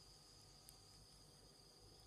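Near silence: room tone with a faint steady high-pitched whine and one tiny click.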